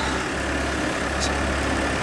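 Diesel engine of heavy earthmoving equipment idling steadily, an even low drone.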